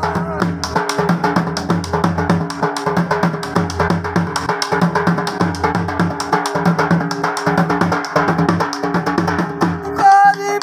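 Dhol, a large double-headed barrel drum, played in a fast, dense rhythm of many strokes a second, over steady sustained melodic notes. It is an instrumental stretch between sung lines, and singing returns right at the end.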